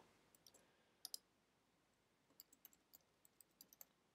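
Faint clicks from a computer: a pair of clicks about a second in, then a quick, uneven run of about nine keystrokes on a keyboard as a word is typed.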